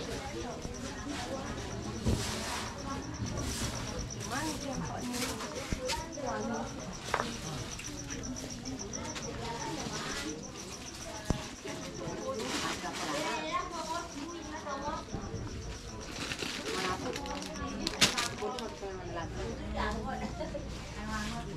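Covered market ambience: people talking at the stalls, with a thin high-pitched whine through the first half and a few sharp knocks, the loudest near the end.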